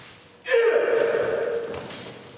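A martial artist's kiai: one loud, drawn-out shout that starts about half a second in and fades over the next second and a half.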